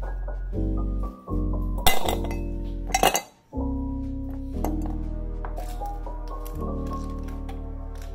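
Ice cubes clinking as they are dropped into a glass tumbler, with sharp clinks about two and three seconds in, over steady background music.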